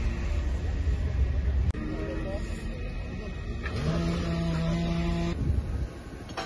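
Field sound of vehicle engines with people's voices. A low rumble breaks off suddenly about two seconds in, and later a steady engine drone rises briefly, holds for about a second and a half, then cuts off.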